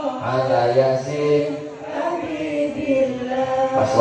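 A man's voice chanting through a microphone and loudspeaker: long, melodic, drawn-out notes that glide up and down, with a short breath-like dip partway through.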